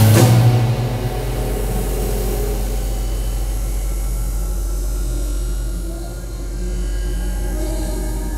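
Live band music: a drum and cymbal crash at the start rings out over about two seconds, then the drums drop away, leaving a steady low synthesizer drone with sustained pad tones.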